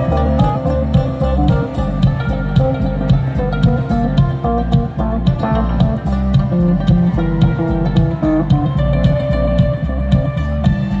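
Live band of guitar, bass, keyboards and drums playing through a PA, with a steady drum beat under bass and guitar lines.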